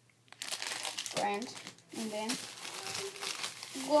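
Plastic bags crinkling and rustling as they are handled.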